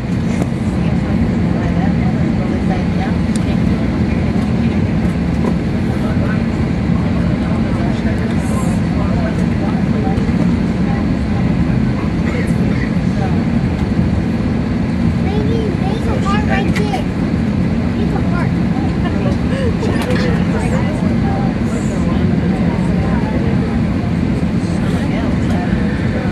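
Steady, loud drone inside a parked Airbus A321 cabin: a low hum holding a few steady tones, with faint passenger chatter underneath.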